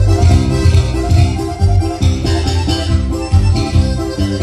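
Live sierreño band playing an instrumental stretch: button accordion, electric bass and strummed acoustic guitar, with a steady rhythm and no singing.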